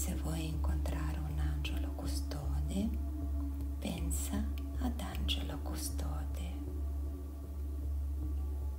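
A woman's soft, whispery voice speaking in short phrases over a steady low drone. The voice stops about six and a half seconds in.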